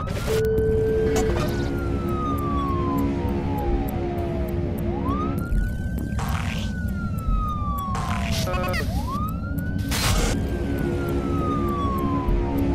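An emergency-vehicle siren wailing through three cycles, each rising quickly and then falling slowly, laid over theme music with a few short whooshes.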